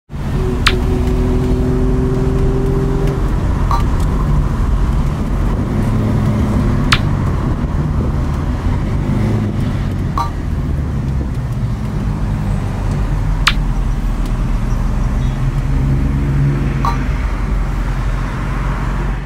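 A 1960s Alfa Romeo Giulia Sprint GT's twin-cam four-cylinder engine running steadily as the car drives along, heard from inside the cabin with road noise. A few sharp clicks come through several seconds apart.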